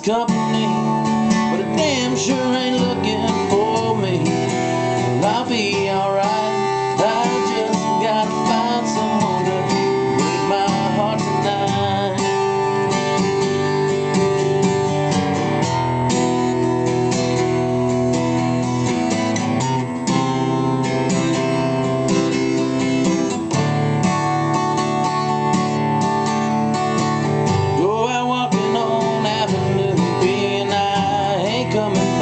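Steel-string acoustic guitar strummed steadily in a country rhythm, with a man singing over it in the first few seconds and again near the end.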